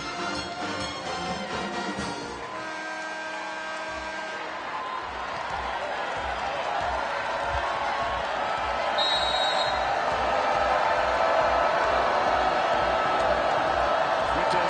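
Arena music over the PA, ending a few seconds in on a held chord, then a packed arena crowd's noise building steadily louder. A short high whistle sounds about nine seconds in.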